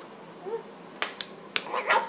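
A toddler making short vocal sounds around a red plastic spoon held in the mouth, with three sharp clicks about a second in and a louder burst of voice near the end.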